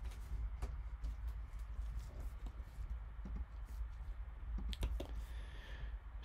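Faint, scattered clicks and light taps over a low steady hum.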